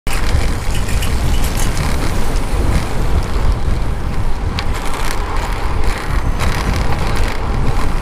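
Wind buffeting a helmet-mounted action camera while riding a road bike, a loud, uneven low rumble, with road and tyre noise underneath and a few faint clicks.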